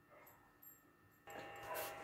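Near silence: room tone for over a second, then a faint, slightly swelling sound, most likely the camera being carried and handled, from about a second and a half in.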